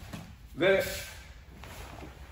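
A man's voice calling a single drawn-out syllable ("and...") about half a second in, over quiet room tone.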